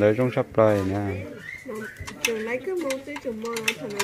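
A voice speaks briefly at the start. After that a bird gives repeated low calls, a few each second, until the end.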